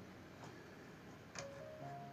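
Near silence, then faint background music comes in about one and a half seconds in: a few soft notes, each held briefly, with a faint click.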